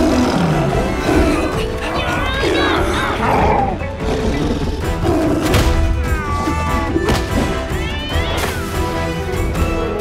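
Cartoon action music under animal roars and wavering yowls from a fight between a dinosaur and a sabertooth cat, with a few crashes.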